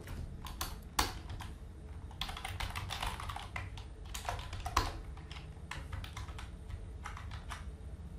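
Typing on a computer keyboard: a run of irregular key presses as code is entered.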